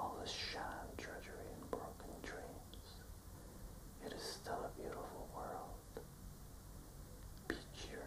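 A man whispering, reciting a poem in a soft, breathy voice with no voiced pitch.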